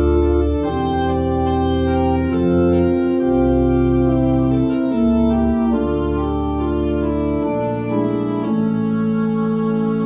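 Two-manual digital church organ playing held, hymn-like chords, with deep pedal bass notes beneath that drop away about three-quarters of the way through.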